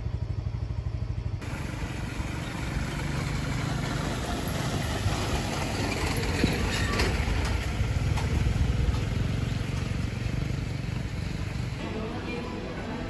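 Steady heavy rain with a motorbike engine passing on the wet road, the engine swelling and fading in the middle.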